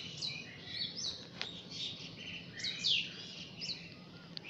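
Birds chirping in the background: many short, quick falling chirps through the whole stretch, with one sharp click about a second and a half in.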